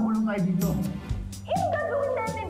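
Background drama music with a dog whimpering and yipping over it.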